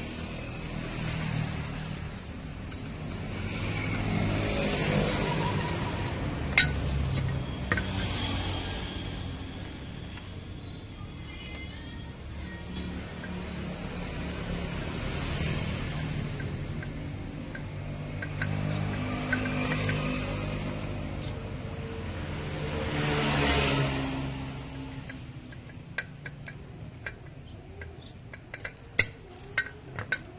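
Sharp metallic clicks of piston rings being handled and fitted onto a diesel engine piston, one loud click early and several in quick succession near the end, over road traffic that swells and fades as vehicles pass.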